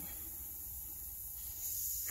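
Faint steady hiss of compressed air from the disconnected cab air-spring hose on a Freightliner Cascadia, its end plugged with a test-light probe to stop the air escaping. The hiss grows a little stronger near the end, over a low rumble.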